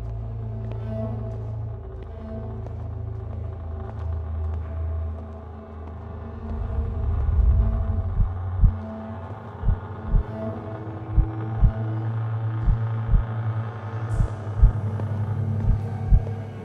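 Dark horror-style film score: a low rumbling drone with sustained tones, joined about halfway by a slow heartbeat of deep double thumps, one beat about every second and a half.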